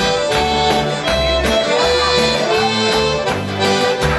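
Live band playing an instrumental introduction: a piano accordion carries the melody over a strummed acoustic guitar, electric bass and a steady tambourine beat.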